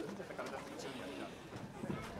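Several people talking at once in low, overlapping voices.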